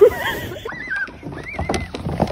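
A loud cry at the start, then high-pitched squealing laughter in three short rising-and-falling bursts.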